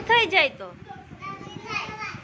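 Speech only: a couple of short spoken words in a high voice at the start, then a low murmur of children's voices.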